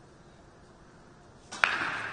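Sharp clack of pool balls striking, two hits in quick succession about one and a half seconds in, then a ringing tail that fades slowly.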